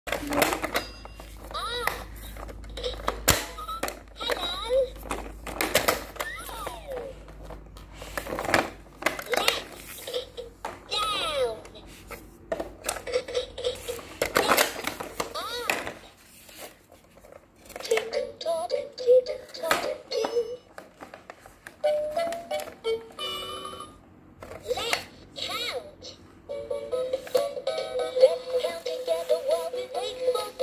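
Fisher-Price peek-a-boo toy toaster's electronic voice talking and singing short tunes through its small speaker, interrupted by sharp plastic clicks as the toast slice is pushed down and pops back up and its button is pressed.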